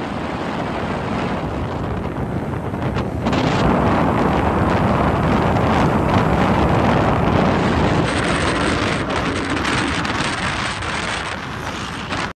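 Wind rushing over the microphone, with the road noise of a moving vehicle beneath it. It grows louder about three seconds in.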